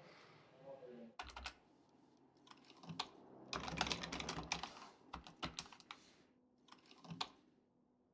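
Quiet typing on a computer keyboard in several short runs of key clicks, the longest in the middle, with pauses between.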